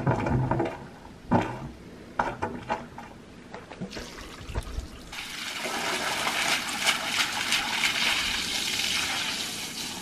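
Water from a garden hose fed by an electric well pump, spraying and splashing onto the floor of a nearly empty concrete tank; it comes in as a steady hiss about five seconds in. Before that, a few scattered knocks and rustles.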